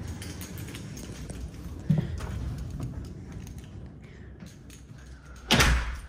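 A door from the garage into the house being opened and shut, with a short knock about two seconds in and a loud, brief bang near the end, over a steady low rumble.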